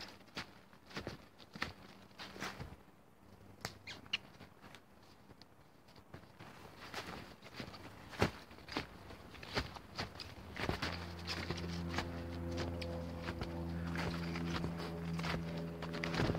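Snowshoe footsteps crunching in snow, an irregular series of steps. About eleven seconds in, a steady low hum with several pitched tones joins them and carries on.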